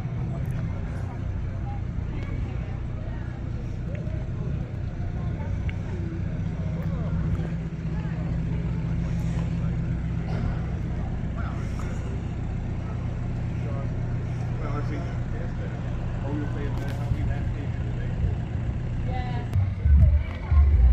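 A car engine idling steadily close by, with indistinct voices in the background.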